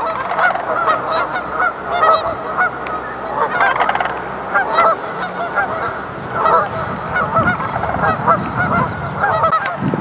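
A flock of geese honking as they fly overhead, many short calls overlapping one another without a break.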